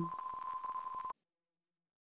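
A steady, single high electronic tone with faint ticking for about a second, which cuts off suddenly into dead silence.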